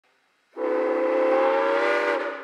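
Steam whistle of the Granite Rock Co. No. 10 steam locomotive blowing one steady blast with a hiss of escaping steam. The blast starts suddenly about half a second in and lasts about a second and a half.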